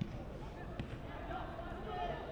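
Faint football-pitch ambience: distant players' shouts over a steady low rumble, with a faint knock about a second in.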